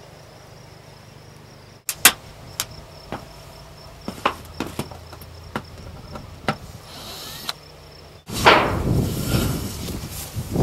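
A series of irregular sharp knocks and clanks on corrugated sheet-metal roofing panels as they are worked on, about eight over five seconds. Near the end, wind buffets the microphone with a loud rumble.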